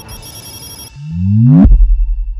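Electronic logo sting for a TV station ident. A fading whoosh with a high shimmer gives way to a synthesized sweep that rises in pitch. The sweep ends in a hit about one and a half seconds in, followed by a low, held boom.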